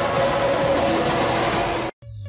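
Steady, noisy din of a busy indoor car-show hall, cutting off suddenly near the end.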